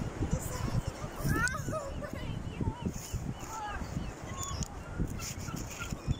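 Busy beach background: distant voices and short, high calls, over an irregular low rumble.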